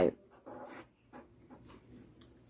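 Faint felt-tip marker strokes on paper, with a brief faint whine about half a second in.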